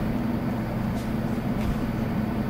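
Steady low hum of room tone, with a faint click about a second in.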